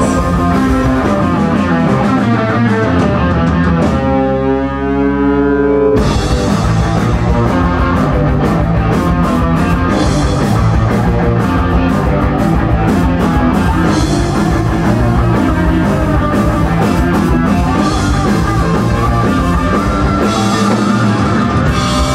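Psychedelic rock band playing live and loud: electric guitars over bass and a drum kit with cymbals. About four seconds in the drums drop out for two seconds, leaving a held, wavering guitar chord, then the whole band comes crashing back in.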